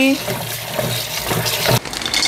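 Kitchen tap running into a plastic basin of water in a steel sink, with hands swishing the chilies, garlic and shallots being washed in it. The sound cuts off abruptly just before the end.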